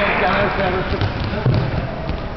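A ball thudding on a sports hall floor during play, the loudest thud about one and a half seconds in, with players' voices echoing through the hall.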